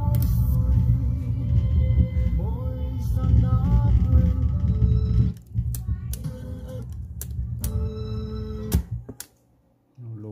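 A song playing back from a cassette in a Sony CFS-715S boombox's tape deck, with heavy bass. It drops in level about five seconds in, then stops with a few clicks near the end.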